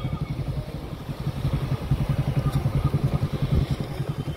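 A motor vehicle engine idling nearby, a steady rapid low pulsing with no change in speed.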